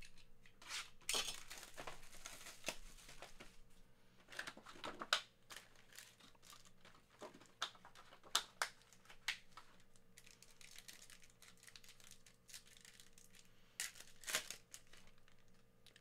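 Cellophane wrap on a box of trading-card packs torn open by its pull strip, then foil card packs crinkling and ripping open as they are handled, in faint scattered tears and crackles.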